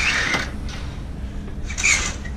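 Cabin window curtain being pulled open along its track: two short swishes with a brief squeak of the runners, one at the start and one near the end, over a steady low hum.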